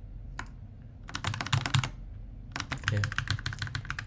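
Keys clicking on a computer keyboard: a single press, then two quick runs of rapid keystrokes.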